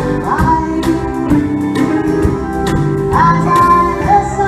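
Live country band: a young woman singing long held, sliding notes over acoustic guitar, keyboard and a drum kit keeping a steady beat of about two hits a second.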